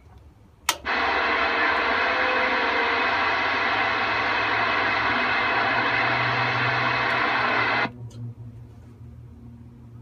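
CB radio receiver hissing with loud, even static for about seven seconds. The hiss opens with a sharp click about a second in and cuts off suddenly near the end, leaving a low hum.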